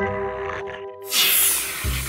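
Spray can hissing out one long blast, a cartoon sound effect, starting about halfway in over background music.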